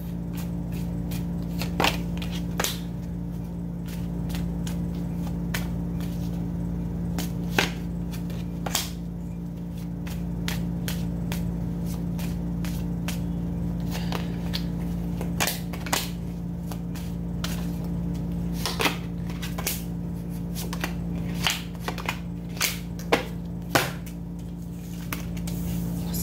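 A tarot deck being shuffled and handled, with many scattered sharp clicks and taps as cards snap together and are set down on the table. A steady low hum runs underneath.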